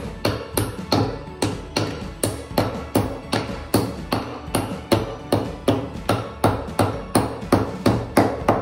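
Small claw hammer striking a nail into a soft wooden kit piece, a steady run of light strikes about two to three a second, with background music underneath.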